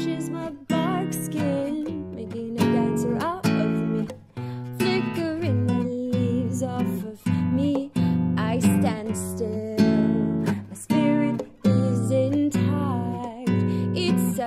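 Nylon-string classical guitar strummed and picked in a steady rhythm, chords struck about every half second to a second, an instrumental passage with no sung words.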